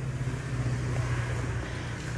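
A low, steady motor hum, such as a passing vehicle's engine, growing louder.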